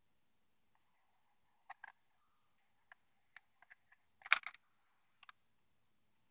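Faint plastic clicks and taps from handling an Aiwa XP-R210 portable CD player as its lid is opened, the loudest clatter a little past four seconds in.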